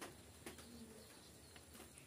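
Near silence: room tone with a soft click at the start and another about half a second in, followed by a brief faint low hum.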